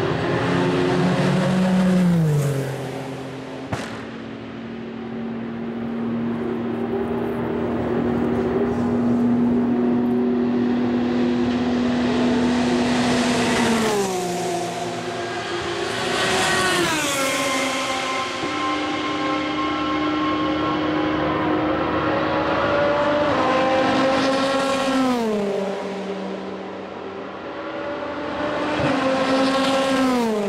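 Le Mans endurance race cars passing one after another at flat-out speed, well over 200, each engine note dropping sharply in pitch as the car goes by. There are about five pass-bys: at about two seconds, around fourteen, two close together around sixteen to seventeen, around twenty-five, and one at the very end, with engines heard approaching and fading away in between.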